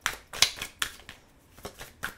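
A deck of tarot cards being shuffled by hand: a series of crisp snaps and slaps, about two a second, the loudest near half a second in.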